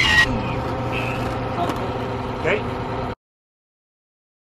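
A steady, even-pitched engine hum, with a short spoken word over it, cutting off abruptly to dead silence about three seconds in.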